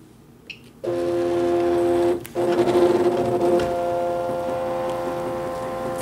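Cricut electronic cutting machine starting a cut: its motors set up a steady, droning hum of several held tones about a second in, breaking off briefly a little after two seconds and then running on as the blade carriage works.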